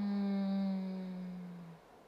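A young woman's voice humming one long, closed-mouth 'mmm' while thinking. It holds a steady low pitch, sagging slightly, and fades out near the end.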